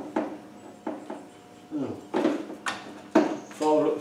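Several separate sharp metallic knocks and clicks of a socket tool being fitted to and worked on a Land Rover differential's drain plug, with a man's voice near the end.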